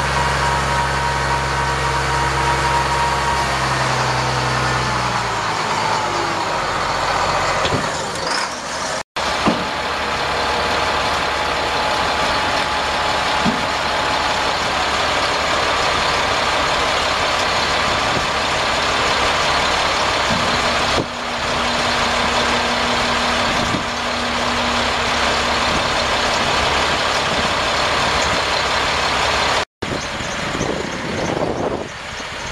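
Caterpillar 3126 inline-six turbo diesel in a Sterling dump truck running at raised speed, its pitch falling about five seconds in as it drops back. After a break it runs on as a steady, noisy rumble.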